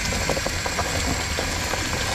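A vehicle engine idling steadily, with scattered crackles and snaps of dead leaves and debris as a car with seized, locked wheels is dragged along the ground.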